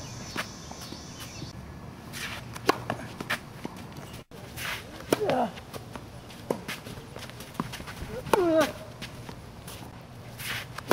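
Tennis rally on an outdoor hard court: a string of sharp pops as the ball is struck by the rackets and bounces on the court, with a couple of short grunts whose pitch falls, the loudest one near the end.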